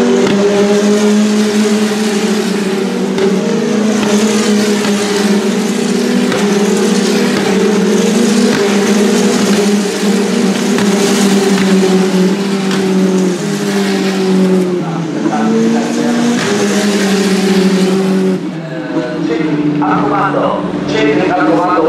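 W Series Tatuus T-318 single-seaters' turbocharged four-cylinder engines running at high revs as several cars pass close together, the engine note holding high with stepped changes in pitch at gear shifts. The engine sound drops away shortly before the end.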